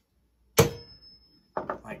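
One solid claw-hammer blow on an awl held against a tin can, punching a small hole through the can wall: a single sharp hit about half a second in, followed by a faint thin ring that fades over about a second.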